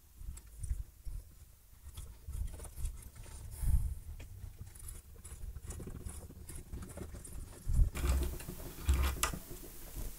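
Ratcheting tap holder clicking in irregular runs as an M12 tap is worked by hand into a steel plate held in a vise, with a few light knocks from handling.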